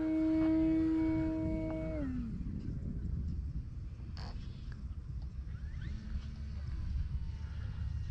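Electric motor and propeller of an E-flite Carbon-Z Cessna 150T RC plane in flight, a steady whine that drops in pitch and fades about two seconds in as the plane goes up into a stall turn. A low rumble remains after it.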